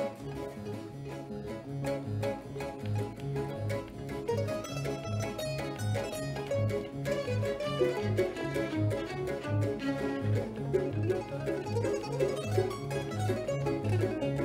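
Instrumental passage of a Neapolitan song played by a small baroque string ensemble. Mandolins and guitar pluck a rhythmic accompaniment over a steady repeating bass, and violins play the melody above it.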